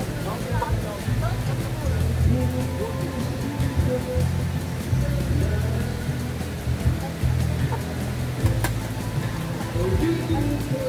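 Background music, with voices mixed in.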